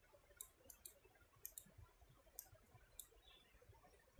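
Near silence broken by about seven faint, sharp clicks spaced unevenly, from a computer mouse and keyboard as text is selected and copied.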